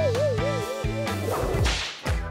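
A wobbling, warbling tone for about a second, then a rising whoosh sound effect near the end, over soft background music.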